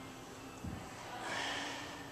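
A woman's breathy exhale with exertion as she lifts a pair of dumbbells, lasting about half a second in the second half. It follows a soft low thump about two-thirds of a second in.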